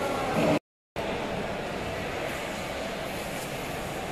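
Ambience of a busy indoor fish market hall: a steady wash of distant, indistinct voices and hall noise. It drops out to dead silence for a moment about half a second in, then carries on as before.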